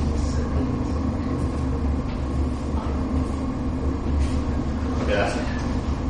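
Steady low room hum from the lecture hall's machinery or electrics, with a few faint light strokes of chalk on a blackboard. A brief, faint murmur of voice comes near the end.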